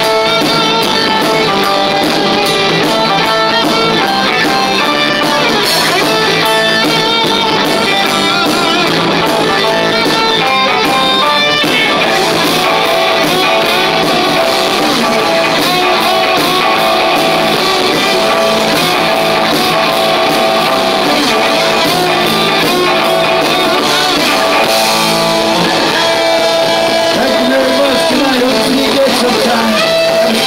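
Live rock band playing loud: distorted electric guitars and drums, with a man singing lead.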